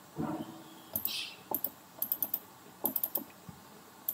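Scattered clicks of a computer mouse and keyboard keys, about ten in all, coming irregularly.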